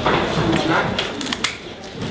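Low voices talking in the background, with a few quick sharp clicks about a second and a half in.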